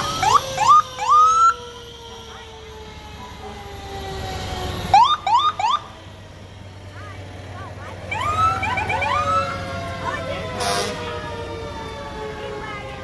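Parade emergency vehicles' sirens sounding short bursts of rising whoops in three groups: at the start, about five seconds in, and around eight seconds in. Under them a lower tone slides slowly down in pitch.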